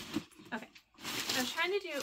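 A woman's voice making short vocal sounds without clear words: a breathy hiss about a second in, then a voiced sound that rises and falls in pitch.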